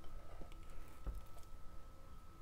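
Silicone spatula scraping gritty sugar scrub out of a glass bowl and pressing it into a small glass jar: faint soft scrapes and a few light knocks, the firmest about a second in.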